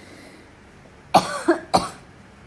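A person coughing, three quick coughs in a row just past the middle.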